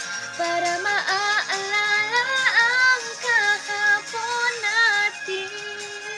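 Music: a woman singing a pop melody over a backing track, the sung line gliding and bending in pitch. It grows softer near the end.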